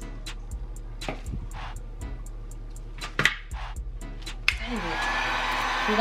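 Background music with a quick ticking beat, about four a second. Near the end an electric heat gun is switched on with a click and starts blowing steadily.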